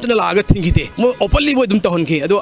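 Speech only: a man talking quickly into a microphone.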